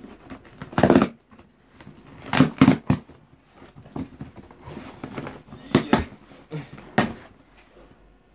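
Cardboard delivery box being handled and pulled open by hand: irregular scrapes, rustles and sharp knocks of cardboard, with a few harder knocks near the end.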